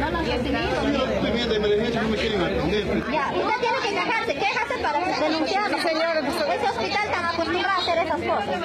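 Several people talking over one another in excited, overlapping chatter, with no single voice clear. A low hum sits under the voices for the first few seconds, then fades.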